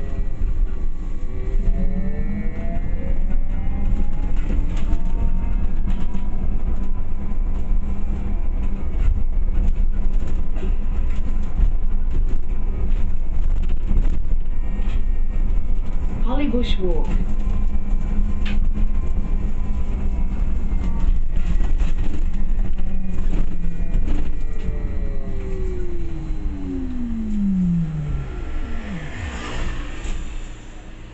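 Interior of a moving city bus: steady low road and drive rumble, with a motor whine that rises as the bus gathers speed, holds, then falls in pitch near the end as the bus slows to a stop.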